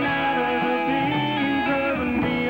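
Live country band playing an instrumental passage between sung lines, led by electric guitars over a steady band backing.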